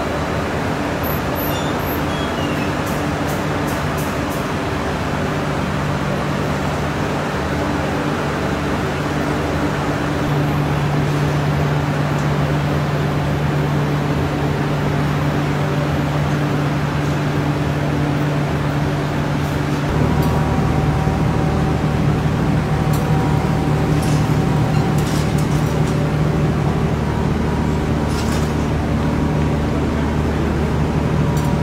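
Sago-pearl (sabudana) processing machinery running: electric motors and a rake conveyor give a loud, steady machine drone with a low hum. About two-thirds of the way in the sound changes abruptly, as a lower hum and a faint higher whine join.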